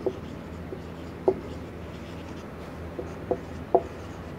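Marker pen writing on a whiteboard: about five short, sharp strokes of the tip on the board, over a steady low hum.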